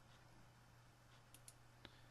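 Near silence with a steady low hum, and a few faint computer-mouse clicks in the second half as a drop-down menu choice is made.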